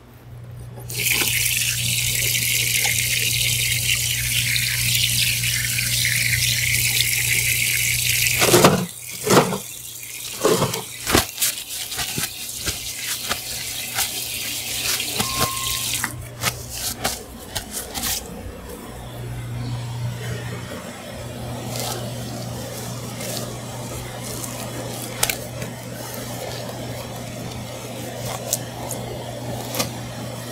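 Water running from the tap of a stainless kitchen hand-washing sink as hands are washed under it. The flow is loud and even for the first several seconds, then broken up by splashes and knocks, and it stops about sixteen seconds in. A steady low hum runs underneath.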